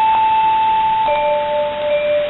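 Shortwave AM broadcast of NHK World Radio Japan on 9605 kHz, received through an SDR, carrying the station's interval signal ahead of its sign-on: a long held note that steps down to a lower held note about a second in, over steady radio hiss.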